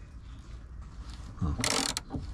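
A 19 mm socket wrench on a rusty bolt of a VW T4's under-floor spare-wheel carrier: quiet straining, then a short scraping sound near the end as the old bolt breaks loose and turns easily.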